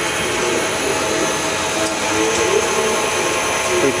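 Steady machinery noise of a running eGen CR-Alpha pyrolysis unit: a constant hiss and hum with a few steady tones. A faint voice is heard in the background about halfway through.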